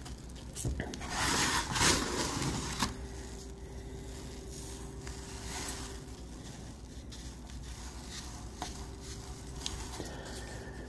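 Hands rubbing and pressing a grit-coated pistol grip: a gritty scraping and rustling of silicon carbide grit in soft epoxy, loudest about one to three seconds in, then faint handling.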